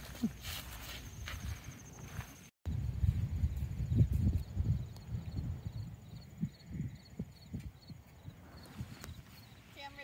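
Wind buffeting the phone's microphone in low gusts, with soft footsteps on a sandy path and a faint regular high ticking about twice a second. The sound drops out briefly a couple of seconds in.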